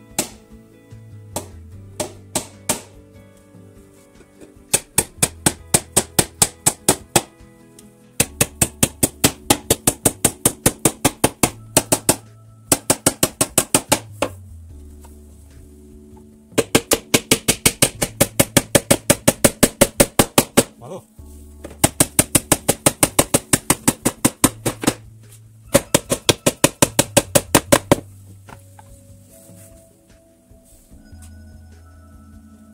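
Small hammer tapping small nails into a wooden nest box, a few single strikes and then quick runs of light, even blows, about five a second, each run lasting a few seconds. Background music with held notes plays underneath.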